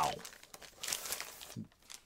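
Plastic packaging crinkling for about a second in the middle as a CGC-graded comic slab is handled and unwrapped.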